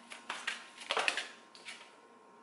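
An oracle card deck being shuffled and handled by hand: a string of soft, irregular card flicks and clicks that thins out near the end.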